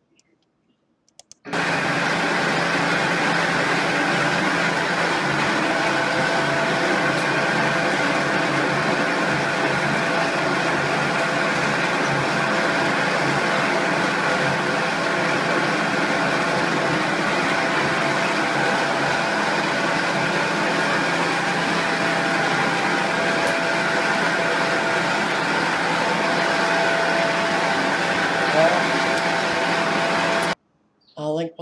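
Factory machinery running with a steady, loud drone and several constant whining tones, starting suddenly about a second and a half in.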